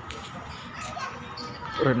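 Background voices of children playing and calling out, faint and scattered, with a man's voice starting up near the end.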